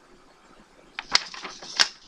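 Sheets of drawing paper being handled and swapped. The first second is near-quiet, then come a few sharp paper crackles, the loudest about a second in and just before the end.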